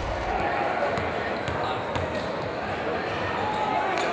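A basketball being dribbled on a wooden gym floor, several sharp bounces, over a murmur of voices in the gym.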